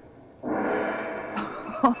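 Doorbell ringing once, starting about half a second in: a rich, many-toned ring that holds and slowly fades over about a second and a half.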